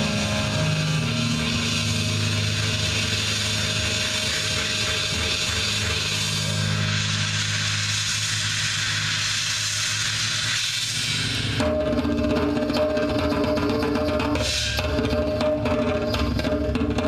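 Live instrumental music: a drum kit played with a heavy wash of cymbals over low held notes. About twelve seconds in, the cymbal wash stops abruptly and steady held pitched notes take over.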